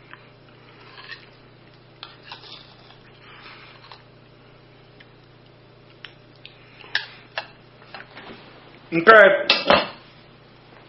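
Faint, scattered clinks and scrapes of a bowl and spoon being handled, with a few sharper clicks about seven seconds in.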